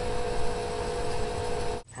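Steady background hiss and low hum with a faint steady tone, cut off abruptly near the end.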